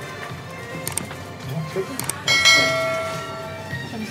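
Subscribe-button animation sound effect: two mouse clicks about a second apart, then a single bell ding that rings out and fades over about a second and a half, over background music.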